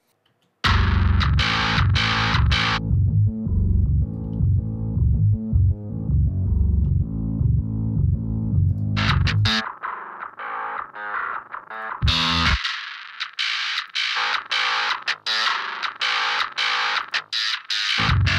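Distorted djent bass riff playing back through multiband saturation, with its frequency bands soloed in turn. After a short silence it starts full range. About three seconds in, the upper bands drop away, leaving the clean, undistorted low end. From about ten seconds in the lows drop out, leaving only the saturated, growling mid and high bands.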